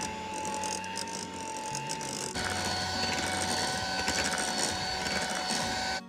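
Electric hand mixer running with its beaters in cake batter, a steady motor whine that drops slightly in pitch a little over two seconds in.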